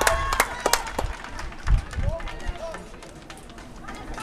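Hands clapping in a steady rhythm, about three claps a second, stopping about a second in. Then faint distant shouts and a brief low rumble of wind on the microphone.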